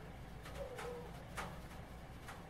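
Faint, irregular light taps of a small brush dabbing liquid masking fluid onto a plastic scale-model body.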